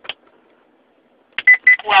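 A click, then near the end two short high beeps from a Laser Interceptor laser jammer powering back on, followed straight away by its recorded voice prompt starting to say "Welcome."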